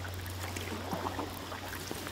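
Canoe paddling on calm water: faint swishes and drips of water from paddle strokes, over a steady low hum.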